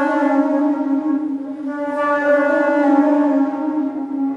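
Wooden baroque flute (traverso) holding one long low note with a trill between E-flat and D, played with the historical trill fingering rather than a narrow modern trill.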